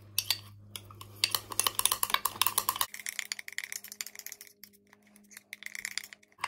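Metal knife stirring thick frosting in a square glass jar, with rapid, irregular clicking and scraping of the blade against the glass.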